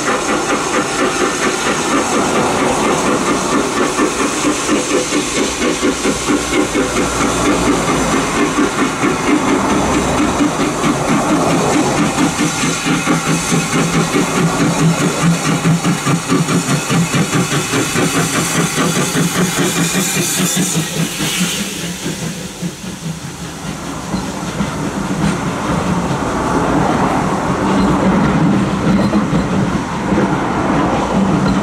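GWR 5700 class pannier tank locomotive 4612 working hard up a bank, its steam exhaust beating rhythmically and growing louder as it approaches. About twenty seconds in it passes close by with a loud rush of exhaust and steam. Then the coaches roll past, wheels clicking over the rail joints.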